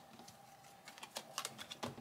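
Tarot cards being picked up and handled on a hard tabletop: a few faint clicks and taps in the second half.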